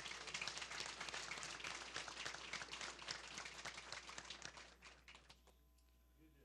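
Audience applauding, thinning out and dying away about five seconds in.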